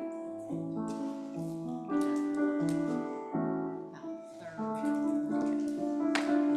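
Piano playing a slow piece of chords, each struck and left to ring before the next.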